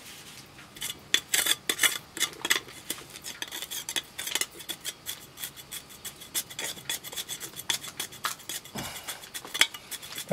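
Steel pointing trowel scraping and tapping mortar into the joints around a freshly set stone block: an uneven run of short scrapes and clicks, metal on mortar and stone.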